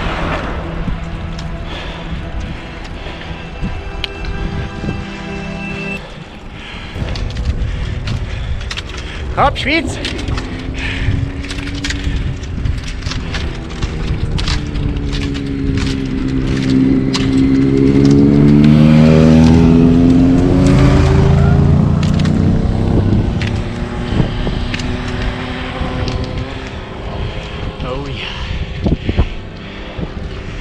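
A motor vehicle's engine passing on the road, its pitch dipping and then rising again, loudest about two-thirds of the way through, with scattered sharp clicks throughout.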